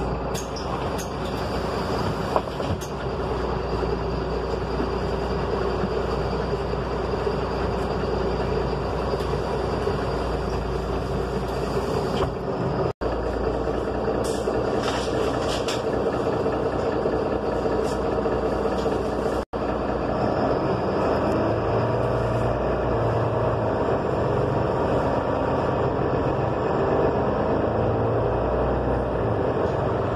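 Interior noise of a city bus: a steady engine and drive rumble with light rattles, broken twice by a split-second gap.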